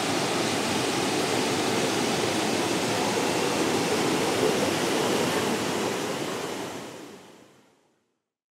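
Creek rapids and a small waterfall: a steady rush of whitewater, fading out over the last second or so.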